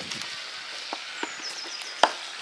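Outdoor ambience with a small bird calling faintly in the second half: one short high descending note, then a quick run of high chirps. A couple of light clicks sound as well.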